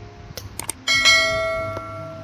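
Notification-bell chime sound effect of a subscribe-button animation: one bright ring about a second in that fades slowly, after a few short clicks.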